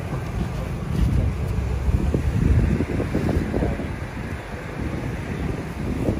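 Wind buffeting the microphone outdoors, a low rumble that swells and fades irregularly and is strongest in the first half.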